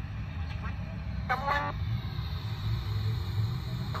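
Race car engines on the oval, a steady low drone, with a short snatch of a voice a little over a second in.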